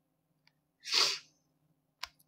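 A single short, sharp burst of breath from a person, about a second in.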